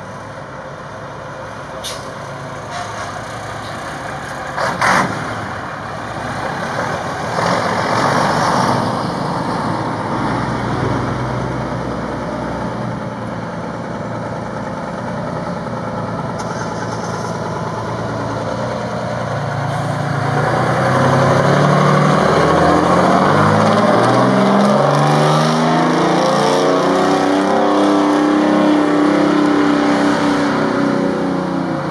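Vintage fire truck engines running as the trucks pull out, with a short loud air-brake hiss about five seconds in. From about twenty seconds in, a Hahn fire engine's engine grows louder as it rolls out toward the road.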